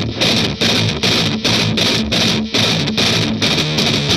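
Fender Telecaster electric guitar playing a fast-picked warm-up exercise: quick runs of picked notes in short phrases, about three a second, the pitch shifting from phrase to phrase. The exercise is meant to loosen the picking wrist.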